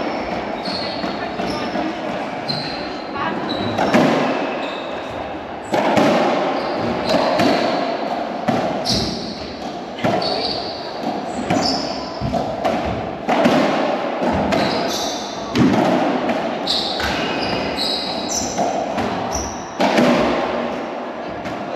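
Doubles racquetball rally: the rubber ball smacking off racquets and the court walls at irregular intervals, each hit echoing in the enclosed court, with short high squeaks from shoes on the wooden floor.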